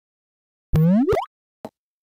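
A short cartoon-style 'bloop' sound effect, its pitch sweeping quickly upward, under a second in, followed by a faint click.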